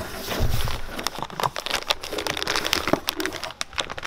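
Cardboard box flaps and a plastic bag crinkling and rustling as new suspension parts are unpacked by hand, with a dull bump about half a second in.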